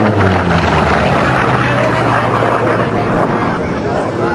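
Piston-engined Unlimited-class racing plane flying past at high speed. Its loud engine and propeller note drops in pitch as it goes by, then carries on as a steady low drone as it pulls away.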